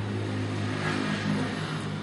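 A steady low hum, with no clear event over it.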